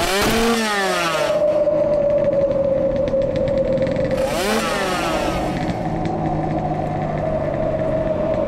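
Off-road motorcycle engines revving hard over a steady high drone, the engine note sweeping up and falling away twice, about half a second in and again about four and a half seconds in.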